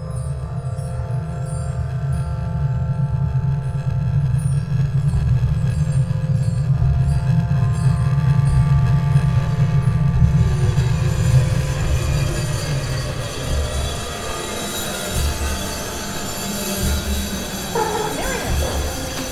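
Ominous horror film score: a deep, heavy drone with held tones above it, swelling in loudness for about ten seconds. After that the low drone breaks up and a harsh, hissing high texture takes over.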